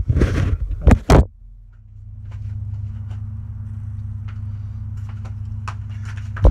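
Rustling and two sharp knocks in the first second, then a steady low hum that holds to the end.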